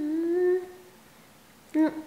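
A girl humming one long closed-mouth "mmm" on a steady, slightly wavering pitch, ending about half a second in. A short "mm" follows near the end.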